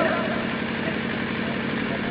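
A steady, low, engine-like hum with no change in pitch or level.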